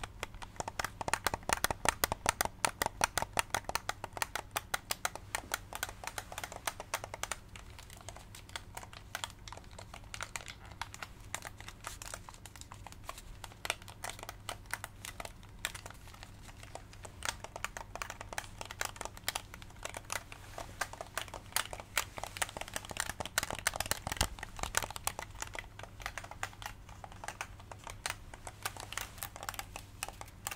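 Quick fingertip tapping and button clicking on a PS5 game controller's hard plastic, many small clicks a second. The clicking is densest and loudest near the start and again about three-quarters through, lighter in between.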